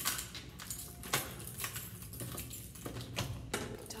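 A bunch of keys jangling and clicking against a door lock while it is being unlocked, a run of irregular sharp metallic clicks; the door is double locked.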